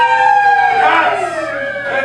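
Several actors imitating cats and dogs with their voices: long, overlapping, drawn-out cries that rise and fall in pitch.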